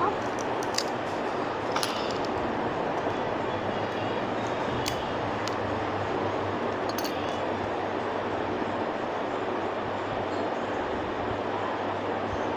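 Steady background noise with a low hum, over which a clear plastic packet handled close to the microphone gives a few light clicks and crinkles, mostly in the first half.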